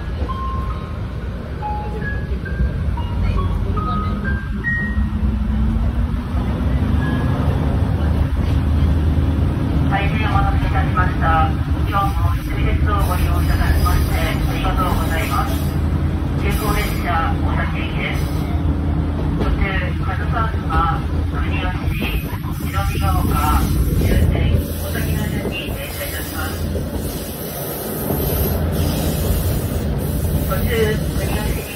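Cabin noise of an old diesel railcar under way: a steady low engine drone that rises in pitch and then holds as the engine takes power. Near the start there is a short rising run of chime notes, and later muffled speech is heard over the running noise.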